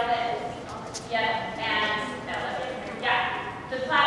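A group of girls singing together in unison, a run of short held notes in repeated phrases.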